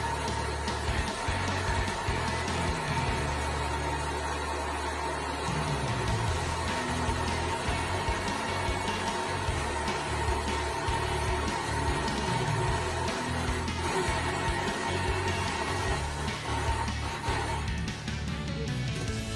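Electric countertop blender running steadily, grinding cooked beans, chiles and onion with little liquid into a thick paste, under background music.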